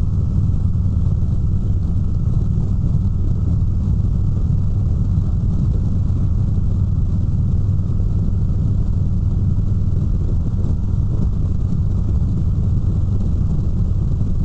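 Steady low rumble of a motorcycle at cruising speed with wind and road noise, heard from the rider's seat: a 2017 Harley-Davidson Road King's Milwaukee-Eight 107 V-twin.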